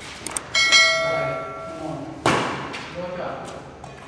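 Badminton rally in a large echoing hall: light racket-on-shuttlecock taps, then a metallic ringing held for about a second and a half, and a sharp hard hit just past the midpoint that rings off the walls.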